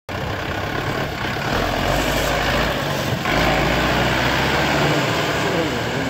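Sonalika DI 55 DLX tractor's diesel engine working steadily under load while pulling a KS super seeder. The sound shifts abruptly about three seconds in, and voices come in near the end.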